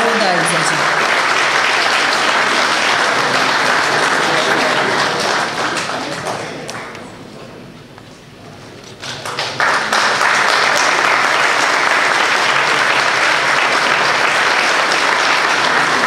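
Audience applauding. The clapping fades away about six seconds in, almost stops, then starts up again loudly about nine and a half seconds in and carries on.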